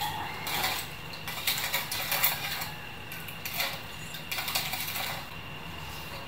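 Metal spoon stirring warm water in a white bowl, scraping and clinking against the bowl's sides as sugar and salt are dissolved. The clinks come irregularly and ease off near the end.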